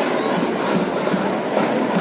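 Steady hubbub of a large crowd, a continuous wash of mingled voices with no single voice standing out.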